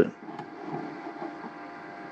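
Steady faint hum of small running electrical appliances, with several thin high tones held steady through it.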